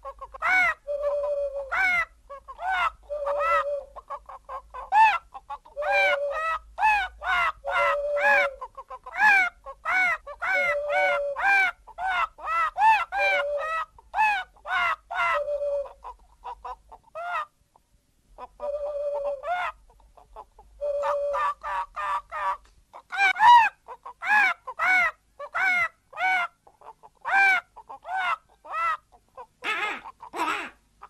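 Rapid runs of short, hen-like clucking and bird calls, several a second, with a brief pause a little after the middle.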